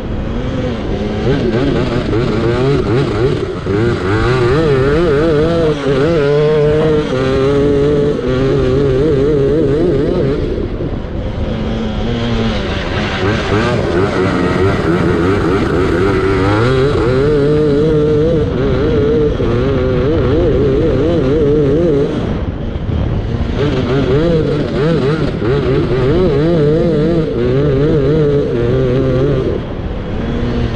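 A racing lawnmower's engine runs hard under full throttle, heard from on board. Its note wavers and rises and falls with the throttle as it is driven round the track, and it eases off briefly about a third of the way in and again about two-thirds of the way in.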